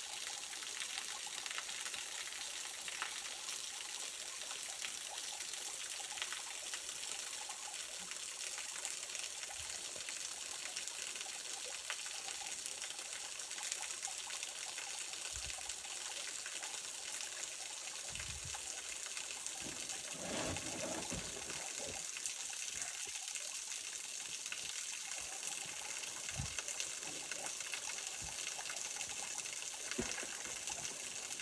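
Waterfall spilling down a mossy rock face into a pool: a steady hiss of falling and splashing water, with a few brief low thumps in the second half.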